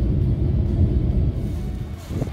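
Loud low rumble of road and wind noise from a car driving along a motorway, easing off near the end.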